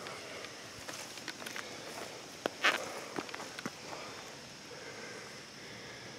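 Soft rustling and scattered light crackles and taps from a mushroom being cut free and handled and from movement through leaf litter and grass.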